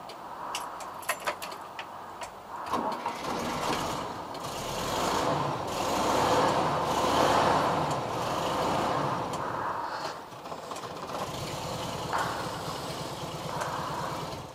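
Air-cooled flat-four engine of a 1970s VW Type 2 camper van: a few sharp clicks at first, then the engine starts about three seconds in and runs, getting louder through the middle as the van drives up.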